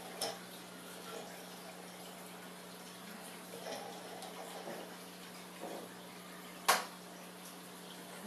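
Quiet handling of plastic drone parts over a steady low hum, with one sharp click near the end as a part is pressed into place.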